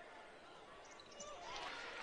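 Faint gym ambience in which a basketball bounces on a hardwood court around a free throw.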